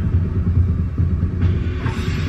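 Deep, steady low rumble from a TV trailer's score and sound design, with a hissy swell building near the end.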